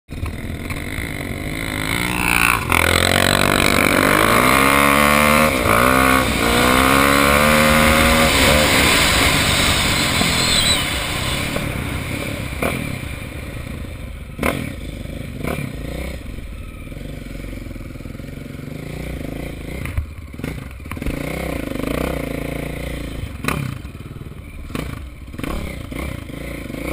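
Single-cylinder four-stroke KTM dirt bike engine accelerating hard, its pitch climbing and dropping back several times as it shifts up through the gears. It then runs at a lower level over rough sand, with sharp knocks and clatter from the bike hitting bumps.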